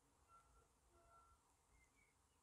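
Near silence, with a few very faint short beeping tones from Samsung Galaxy Buds in discovery (pairing) mode held to the microphone: their pulsating pairing signal, barely picked up.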